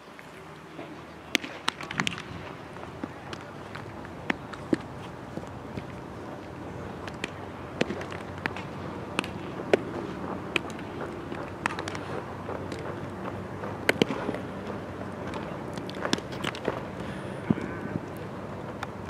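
Scattered sharp pops of baseballs smacking into leather gloves, about a dozen, irregularly spaced. They sit over a steady open-air ballpark background with faint distant voices.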